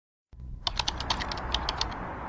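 Fast typing on a laptop keyboard: a quick run of about a dozen key clicks, roughly ten a second, over a low room hum.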